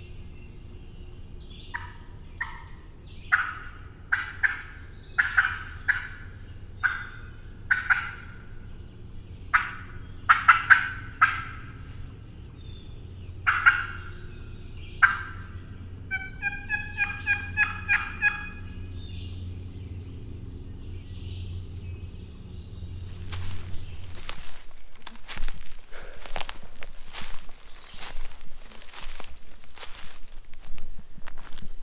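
Wild turkey clucking, sounding like a hen: a string of short, sharp clucks at uneven intervals, then a quick run of higher pitched notes. From about three-quarters of the way in, footsteps in leaf litter take over.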